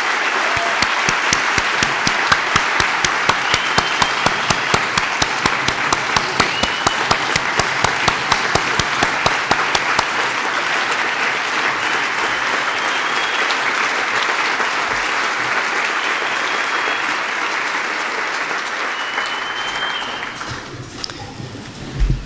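Large audience applauding steadily, with a single nearby clapper standing out at about three claps a second through the first half. The applause dies away near the end.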